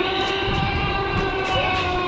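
Long, loud roar of an animatronic Tyrannosaurus rex, a recorded roar played by the robotic dinosaur, held at a steady pitch over a low rumble.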